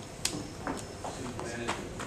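Voices talking in a room, with about five sharp clicks or knocks scattered over two seconds; the first, about a quarter-second in, is the loudest.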